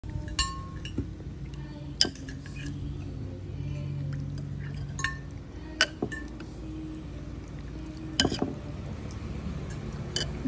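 Metal ladle clinking against a ceramic soup bowl as the soup is stirred and scooped: several sharp, ringing clinks a second or more apart, two close together about eight seconds in, over a steady low hum.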